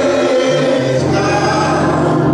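Gospel singing: a man's voice holding long notes, with other voices singing along over steady low sustained tones.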